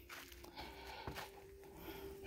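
Faint background with a thin, steady hum and a couple of soft clicks: a quiet pause with no clear sound event.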